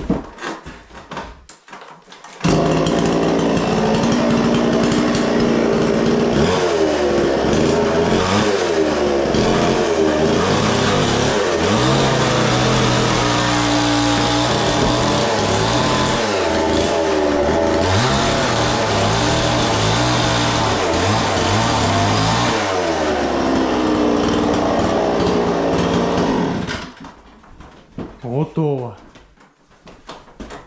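Petrol chainsaw starting about two seconds in and cutting up through wooden ceiling boards, its engine pitch rising and falling as the chain bites and frees. It cuts off shortly before the end.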